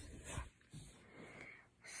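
Near silence between spoken words, with a faint breath.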